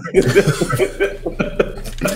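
A man laughing, a run of short repeated breathy laughs.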